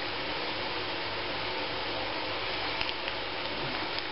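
A steady, even rushing noise with no rise or fall, with a few faint small clicks about three seconds in.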